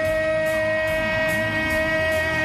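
A ring announcer's voice holding one long, drawn-out note at a single steady pitch, over rock entrance music with a regular beat.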